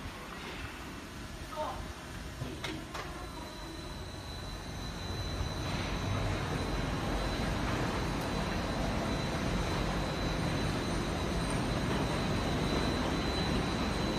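Two construction hoist cages running on their masts: a steady mechanical drive noise with a thin, high steady whine, getting louder about five seconds in. Two sharp clicks sound shortly before.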